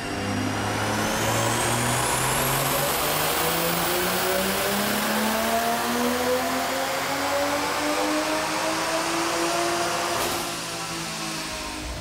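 Toyota GR Supra's turbocharged 3.0-litre B58 inline-six, on an AMS Alpha 6 Garrett GTX3076R Gen II turbo, making a wide-open-throttle pull on a chassis dyno. The engine note climbs steadily in pitch for about ten seconds, with a high whistle rising over the first few seconds. Near the end the throttle closes and the revs fall away.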